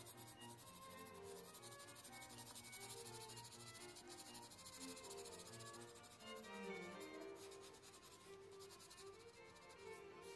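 Faint scratchy rubbing of a mechanical pencil's 2B lead, held on its side, shading back and forth on sketch paper. Soft background music plays underneath.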